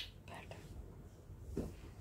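A short quiet pause in a woman's talk: a brief sharp hiss right at the start, then faint rustling of cotton fabric being handled.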